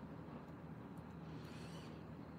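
Quiet room tone: a low steady hum, with a faint soft rustle about one and a half seconds in.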